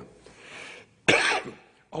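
A man coughs once into his hand, a single sharp cough about a second in.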